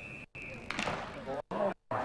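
A man's voice in television sports commentary, cut by short dropouts of silence. A steady high-pitched tone sounds during the first half-second.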